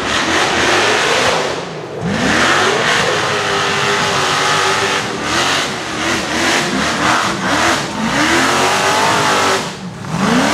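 Rock-racing buggy engine revving hard under load on a steep rock climb, its pitch sweeping up sharply and then rising and falling again and again as the throttle is blipped.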